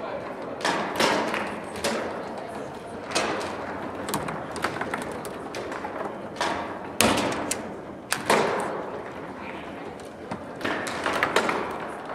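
Foosball play on an Ullrich Sport table: irregular sharp clacks and thuds as the ball is struck and trapped by the rods' plastic players, the loudest about seven seconds in.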